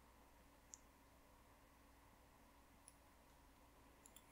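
Near silence, broken by two faint sharp clicks, one under a second in and a weaker one near the end: a crochet hook knocking against metal knitting needles while stitches are pulled through.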